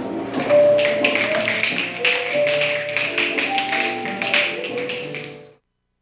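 A group of people finger-snapping in appreciation, a dense run of sharp clicks over soft background music with held notes; both stop abruptly about five and a half seconds in.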